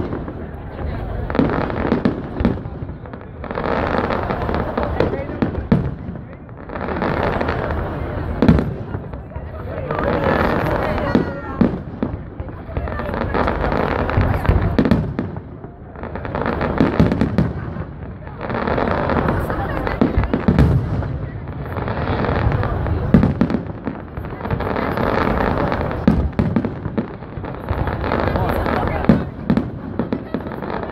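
Aerial fireworks going off: sharp bangs, and waves of dense crackling bursts that swell and fade roughly every three seconds.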